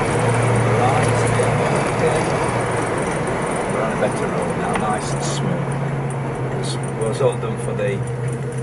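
1970 Pontiac GTO's V8 engine with Flowmaster exhaust running steadily at a cruise, heard from inside the cabin over road noise. Its note steps up a little about five seconds in.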